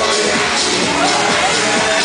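Live pop song played loud through a PA system, male voices singing over the backing track.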